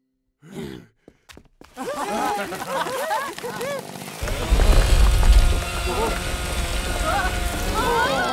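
Cartoon soundtrack of several excited voices whooping and cheering in rising-and-falling swoops. About four seconds in, a heavy low rumble joins with sustained musical tones.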